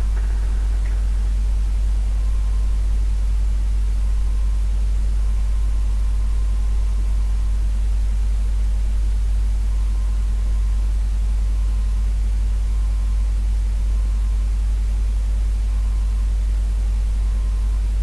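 A steady low hum that runs unchanged, with no distinct events.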